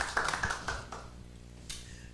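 Scattered hand clapping from a small audience, thinning out and dying away about a second in.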